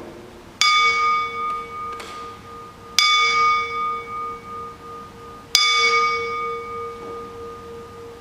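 A bell struck three times, about two and a half seconds apart, each strike ringing on and slowly dying away: the bell rung at the elevation of the consecrated bread after the words of institution.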